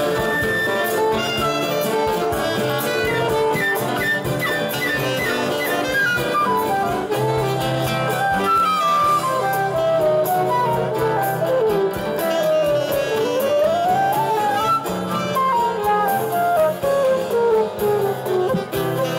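Live instrumental passage of a ballad: flute and saxophone play the melody in quick rising and falling runs over acoustic guitar and cavaquinho accompaniment.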